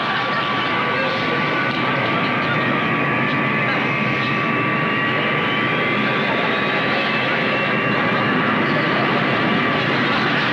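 Jet airliner engines at takeoff power, heard from the passenger cabin: a steady roar with a whine that rises in pitch from about three seconds in until about seven seconds in.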